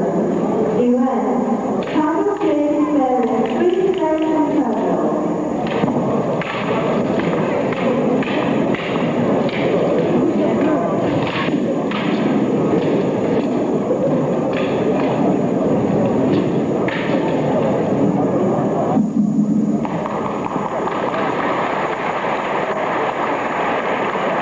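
Sharp clacks, many in quick succession, as a long staff and a three-section staff strike each other in a sparring duel, over steady crowd noise in a large arena hall.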